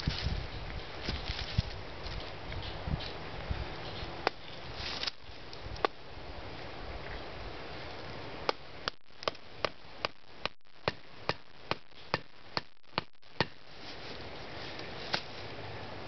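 A hand-held rock hammering the top of an upright wooden stick: a few single knocks, then a steady run of about a dozen sharp knocks at roughly two and a half a second, and one more near the end.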